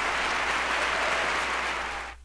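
Applause played in as the show goes to a break: a steady wash of clapping that fades away about two seconds in.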